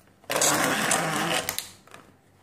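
The plastic handle of a selfie-stick tripod being twisted in the hands, giving a rattling grind for about a second from a short way in, followed by a few small clicks.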